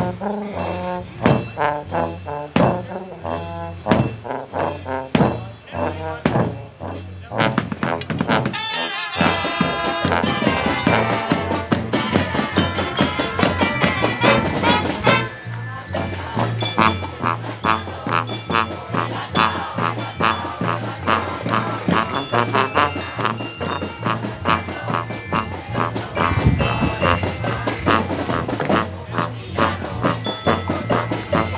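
Marching band playing, brass and percussion together. For about the first nine seconds it plays spaced, accented hits, then goes into a continuous full-band passage.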